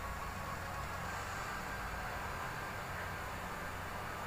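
Steady low hiss with a faint low hum: room tone picked up by the microphone, with nothing else happening.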